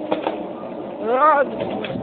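A short wordless vocal sound, rising then falling in pitch, a little past a second in, over a steady background noise with a few light clicks near the start.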